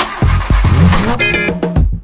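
A Porsche SUV's engine being cranked with the dashboard start button, with uneven deep pulses and a brief rise in pitch, but it does not run: the car is taken to be broken. Background music plays over it.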